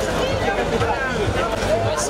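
Voices talking over crowd hubbub.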